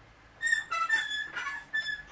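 Metal comic-book spinner rack squealing as it is turned by hand: a string of short, high squeaks at shifting pitches.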